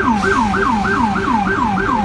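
Electronic police siren on an unmarked NYPD car, sounding in fast yelp mode: a loud, quick, repeating rise-and-fall wail at about three to four cycles a second.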